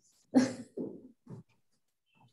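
A short laugh: one sharp burst followed by two fainter ones, dying away about a second and a half in.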